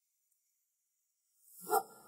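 Dead silence for about a second and a half, then one brief vocal sound near the end, a short murmur or breath from a person.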